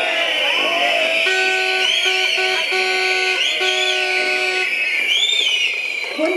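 Noise-makers in a protest crowd: a horn sounding a run of held notes at one pitch, with whistles gliding up and down over a steady shrill din.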